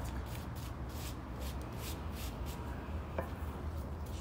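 Light, quick scraping and rustling of potting soil being brushed and cleared around a potted plant with a plastic scoop and gloved hands, several strokes a second, over a steady low hum.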